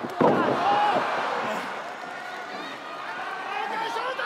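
A wrestler's body lands on the ring canvas with a slam just after the start. Arena crowd noise follows, loudest at first, fading, then building again near the end.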